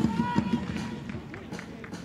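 Stadium crowd sound at a football match, with supporters' drums beating a steady rhythm and clapping along.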